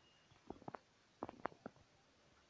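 Roosting hens clucking softly: a faint, quick run of about seven short, low clucks.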